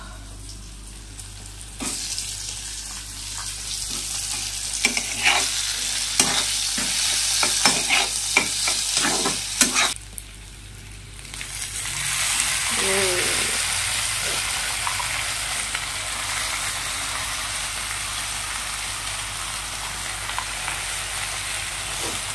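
Food frying in hot oil in a black kadai, with a metal spatula clacking and scraping against the pan. About halfway through, leafy greens go into the pan and a louder, steady sizzle carries on to the end.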